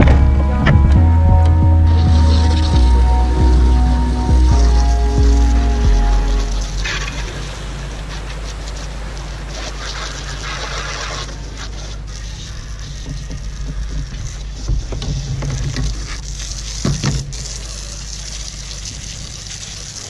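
Music with a heavy bass line ends about six seconds in. It leaves the steady hiss of a garden hose spraying water onto a plastic kayak as it is rinsed off.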